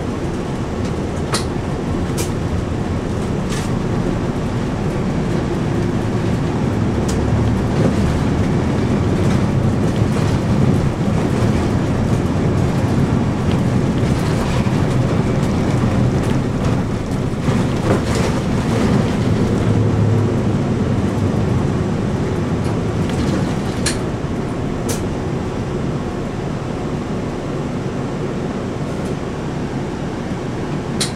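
Cabin noise of a city route bus under way: a steady engine drone with road noise, swelling in the middle stretch and easing off toward the end. A few sharp clicks or rattles break in now and then.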